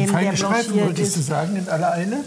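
Food sizzling in a hot wok of freshly added sliced Chinese cabbage and crumbled sausage, under a person's voice talking throughout.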